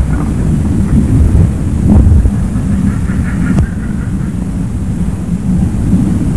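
Loud, uneven low rumble of wind buffeting the microphone.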